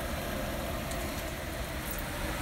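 Steady stovetop noise of chicken simmering wetly in a Red Copper ceramic non-stick square pan over a gas burner on high, with a low rumble and hiss. The chicken is boiling in its own juices rather than sizzling, a sign that the pan is not getting hot enough to sauté.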